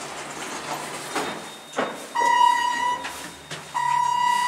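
Elevator's electronic signal sounding two long, steady single-pitched beeps, the first about two seconds in and the second starting near the end, after a couple of soft knocks.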